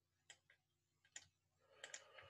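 A few faint, sharp clicks from someone working a computer, about five spread unevenly over two seconds, in near silence.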